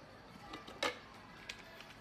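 Hard plastic handling clicks from the wood-grain aroma diffuser as its cover is worked loose from the base: a few light ticks and one sharper knock a little under a second in.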